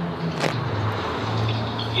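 A motor vehicle engine running nearby: a low steady hum that grows louder about halfway through. There is a single short click about half a second in.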